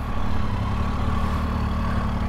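Triumph motorcycle engine running steadily at low revs as the bike rolls slowly, almost to a stop, on a dirt track.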